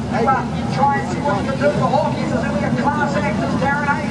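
A pack of speedway midget race cars running slowly around the dirt oval, a steady low engine rumble, with the announcer's voice over the public-address speakers on top.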